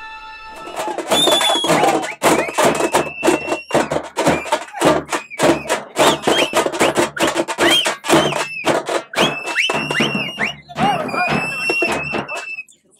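Hand-held frame drums beaten in a fast, dense rhythm by several players, starting about half a second in. High, shrill whistle-like tones glide up and down over the drumming.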